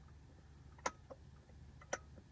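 Two sharp plastic clicks, about a second apart, as the pop-out cup holder in a car's rear fold-down armrest is pushed closed, over a faint low hum.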